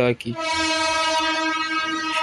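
A horn sounding one long, steady note for about a second and a half.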